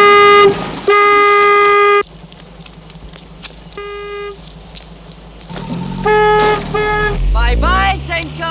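Car horn honking in a single steady tone: a blast at the start, a second lasting about a second, a short toot about four seconds in, and two quick toots near the end. A voice shouts just as the horn stops.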